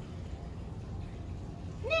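Steady low background rumble, then near the end a zookeeper calls the polar bear's name once, in a short, high voice that rises in pitch, to get his attention.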